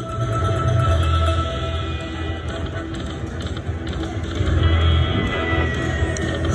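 Buffalo video slot machine playing its free-games bonus music and sound effects while the reels spin and the win meter counts up.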